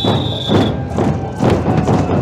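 A marching group of large bass drums and snare drums beaten with mallets in a steady, loud rhythm of heavy thuds.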